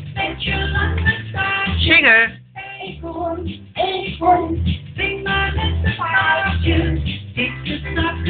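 A young child singing a children's song along to music with a regular low beat.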